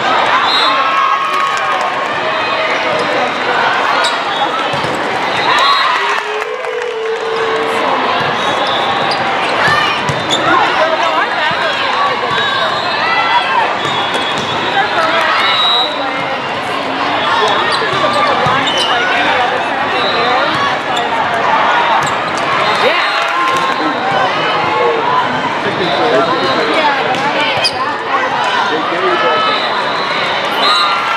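Volleyballs being hit and bouncing on a hard court again and again, over a steady din of crowd voices and players' calls, echoing in a large hall.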